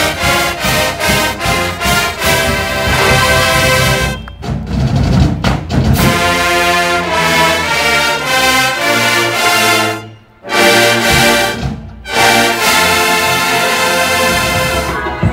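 A large university marching band's brass section, trumpets, trombones and sousaphones, playing a loud piece live in the open air. The music breaks off sharply for a moment about ten seconds in and again briefly at about twelve seconds before carrying on.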